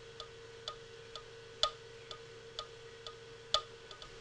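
Software metronome clicking at about 126 beats per minute in 4/4 time, roughly two clicks a second, with every fourth click louder to mark the first beat of each bar.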